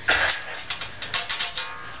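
A handsaw shaken hard so its blade flexes back and forth, making a rapid wobbling warble of about eight to ten flaps a second after a sudden loud start.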